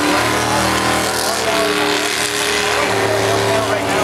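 An engine running steadily, its pitch shifting shortly after the start and again about three seconds in.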